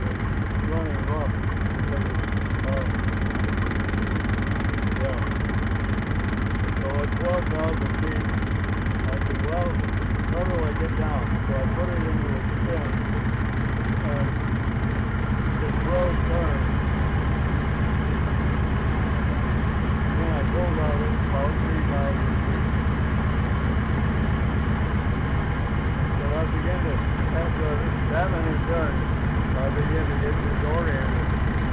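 Open-cockpit biplane's piston engine running at low power while the plane taxis, with wind on the microphone. About halfway through, the engine note drops lower and gets slightly louder.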